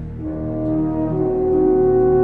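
Orchestral film score: slow held chords over a steady low drone, with a new chord coming in just after the start and swelling louder.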